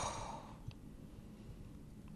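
A woman's breathy sigh that fades out within the first half second, then quiet room tone with one faint click.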